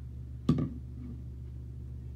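A single sharp knock about half a second in, with a brief ringing after it, over a steady low hum; it sounds like the camera being handled or bumped.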